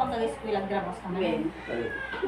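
People's voices talking at a meal table.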